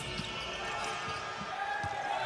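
A basketball bouncing on a hardwood arena court during live play: a few dull thuds over the steady noise of the arena.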